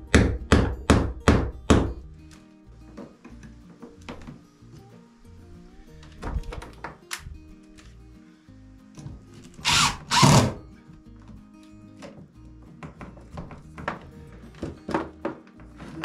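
A quick series of about six sharp knocks in the first two seconds, then two short bursts of a cordless drill/driver about ten seconds in, with scattered light clicks and quiet background music underneath.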